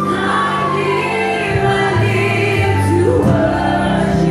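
Live gospel music: voices singing over a band, with an electric bass holding low notes underneath.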